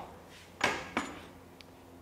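Two short metallic clacks about half a second apart as the heavy 1-inch impact wrench's socket is pulled off a loosened nut and set onto the next nut, with only faint room noise between.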